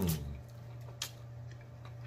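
Close-up mouth sounds of eating a fried chicken wing: a few sharp wet lip smacks and mouth clicks, the loudest about a second in, after a hummed "mm" that trails off at the start. A steady low electrical hum runs underneath.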